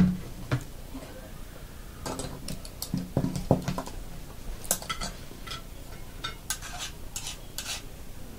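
Bowls and a table knife knocking and scraping on a table as icing is spread on biscuits. There is one sharp knock at the very start, the loudest sound, then scattered clicks and scrapes.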